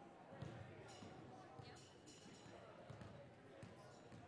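Basketballs bouncing on a hardwood gym floor, faint irregular thumps, with voices chattering in the background.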